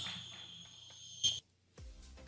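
Faint background hiss with a steady high-pitched whine, broken by one short sharp sound about a second and a quarter in, then a moment of dead silence. Near the end faint background music comes in with a soft low beat about twice a second.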